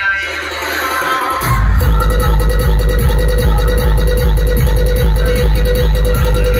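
Loud electronic DJ music played through a large stack of bass-heavy loudspeaker boxes. The bass is cut under a falling sweep at first, then a heavy bass beat drops back in about a second and a half in and keeps a steady pulse.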